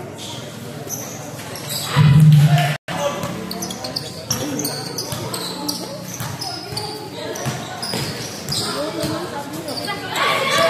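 A basketball bouncing on a painted concrete court as it is dribbled, amid people talking and calling out. About two seconds in there is a brief loud low sound, cut off by a short dropout.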